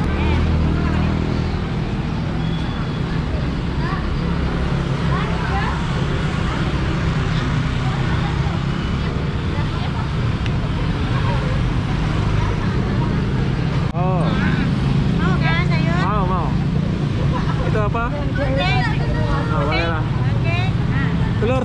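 Street traffic outside a food stall: the steady low hum of motorbike engines running nearby, with people talking in the background that grows busier near the end.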